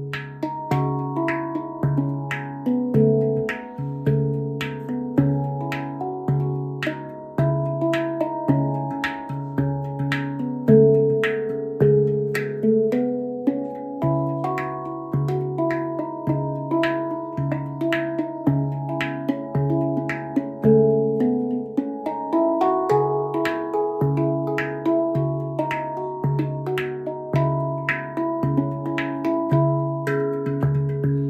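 A MASH stainless-steel handpan tuned to C# Annaziska 9 played with the hands: a steady pulse of the low C# centre note about once a second under a running melody of ringing higher notes, with light finger taps on the shell.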